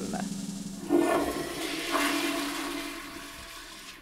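Toilet flush: a rush of water starting about a second in and dying away gradually.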